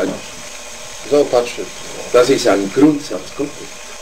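A man's voice speaking a few words in two short bursts, with pauses of low steady background noise between them.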